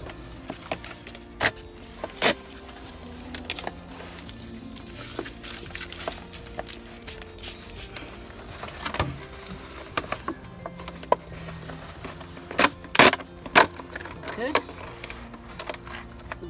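Soft background music with sustained notes, over scattered sharp clicks and crackles of a plastic milk jug being handled as duct tape is pulled off it. The loudest cluster of clicks comes about three-quarters of the way through.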